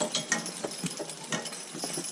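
Metal harness hardware on a team of Percheron draft horses clinking and rattling in short irregular clicks, a few a second, as the pair walk in harness pulling the driver's cart.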